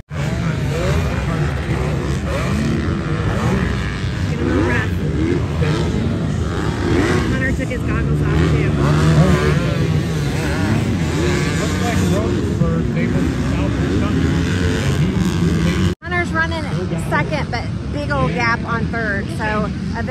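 Motocross dirt bikes racing on the track, engines revving up and down as they go through the gears, with a brief break about three-quarters of the way through.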